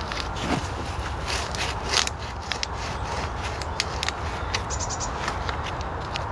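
Black corrugated plastic pipe being pushed by hand down into a hole in the soil, giving irregular small clicks, scrapes and crackles over a steady low rumble.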